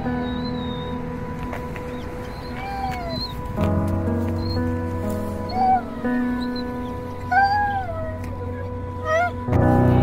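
Doberman puppy whining in short, high, arching whines, several times, the loudest ones in the second half. The whimpering is the excited kind, as if glad to see someone. Background music plays underneath.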